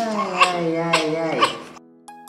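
A three-week-old newborn crying: one long wail that falls in pitch and fades out near the end, over soft background music.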